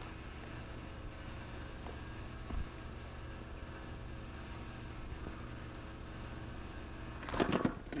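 Steady low hum and hiss on the soundtrack of a home VHS camcorder recording, with a faint thin high tone above it and a soft bump about two and a half seconds in. Near the end a man's voice on the tape starts to speak.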